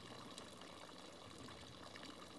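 Faint, steady trickle and splash of a fountain's thin water jet falling into its basin.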